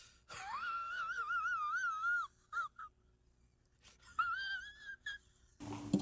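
A person's high, wavering wheezy whine: one stretch of about two seconds, two brief squeaks, then a shorter second stretch.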